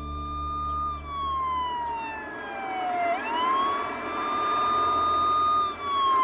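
Ambulance siren wailing: a high tone holds for about a second, slides slowly down over two seconds, swoops quickly back up and holds, then starts falling again near the end.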